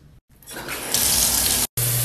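Shower water running: a steady hiss of spray that fades in after a brief silence, stops abruptly near the end and starts again at once.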